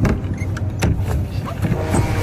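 A motorboat's engine running steadily, with rushing water and a couple of sharp knocks or splashes.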